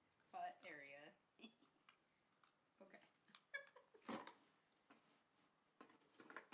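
A cat meows once, a drawn-out call falling in pitch about half a second in. Faint clicks and rustles follow as the plastic-based figure and its packaging are handled, the sharpest click about four seconds in.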